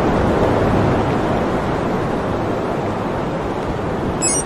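A steady rushing noise with a low rumble beneath it, a whoosh-like sound effect in a promo's sound design.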